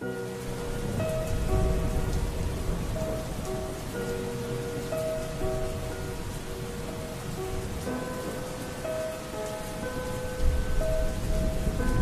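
Steady rain ambience under a few soft, held keyboard notes, with a low rumble like thunder swelling about ten seconds in, opening a lo-fi track.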